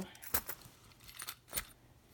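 A few light metallic clicks and jingles as a small leather coin purse full of change and a key case are set down on a soft bedspread: coins clinking inside the purse and keys jangling in the case.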